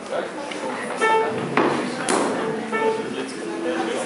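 Chairs scraping and knocking on a wooden floor as several people get up from a table, with murmured voices and two short pitched notes.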